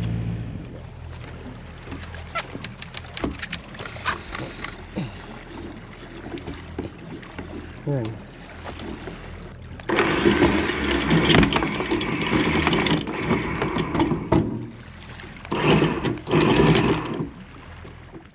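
A boat's engine idles low while the anchor is let go: a rapid run of clicks a couple of seconds in, then the anchor chain rattling out over the bow in a loud stretch about ten seconds in and again briefly near the end.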